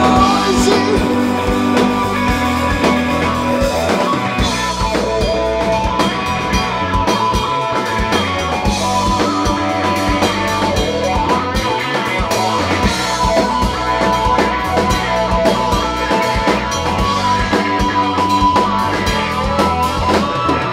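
Rock band playing live: drum kit, electric guitar, bass guitar and a Roland Juno synthesizer keyboard, in a steady, continuous rock groove.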